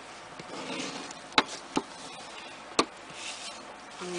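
Cardstock being folded and handled on a tabletop: a soft paper rustle and three sharp taps, two close together just under halfway through and one more later.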